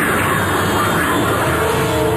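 Animated-series soundtrack: a loud, steady rush of sci-fi energy sound effects mixed with the score.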